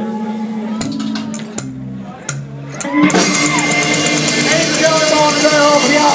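Live rockabilly band: a ringing chord dies away into a sparse break with a few clicks and a short run of low notes stepping down, then the full band with drums and electric guitar comes back in loudly about three seconds in.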